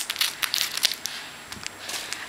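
Plastic packaging of card sleeves crackling and crinkling as it is cut and pried open, a quick run of sharp crackles mostly in the first second, then quieter.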